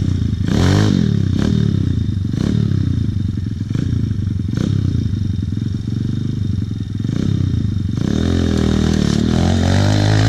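Small single-cylinder four-stroke pit bike engine, a modded Kawasaki KLX110, blipped up and down about once a second. It revs harder and holds higher revs over the last couple of seconds.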